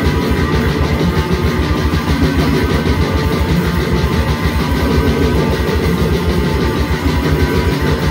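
Death metal band playing live: heavily distorted electric guitar over very fast drumming, the kick drum pulsing rapidly.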